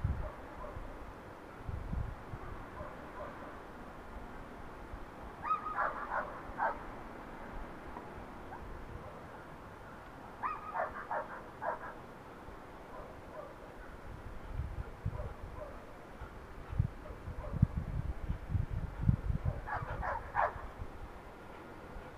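A dog barking in three short bursts of several quick barks each, spread several seconds apart.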